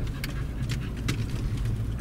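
Steady low rumble of a moving car heard from inside the cabin, engine and tyre noise on the road, with a few short sharp ticks.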